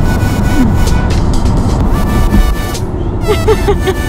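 Electronic background music over the steady rumble of road and tyre noise inside a moving Tesla Model 3's cabin, with a short burst of laughter near the end.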